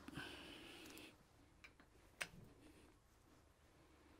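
Near silence, with a faint hiss in the first second and a single faint click about two seconds in from a socket being handled on a wheel-hub nut.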